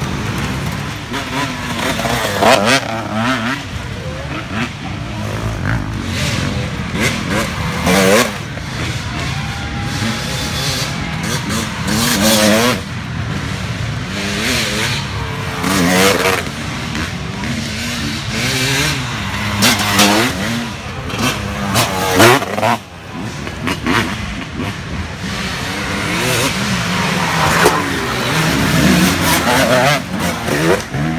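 Off-road dirt bike engines revving hard as riders pass one after another on a dirt trail, the pitch climbing and dropping with each burst of throttle, several times over.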